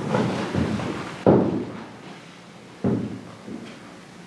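Two sudden thumps about a second and a half apart, each with a short ring of room echo.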